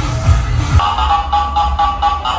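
Electronic dance music: a kick-drum beat that drops out less than a second in, leaving held synth notes.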